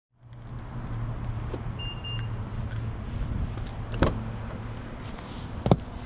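Car door being unlocked and opened: a short electronic beep about two seconds in, a click at about four seconds and a louder latch clack near the end, over a steady low hum that stops about halfway through.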